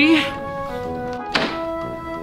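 A man laughs briefly at the start, then there is a single sharp thunk about a second and a half in, over steady background music.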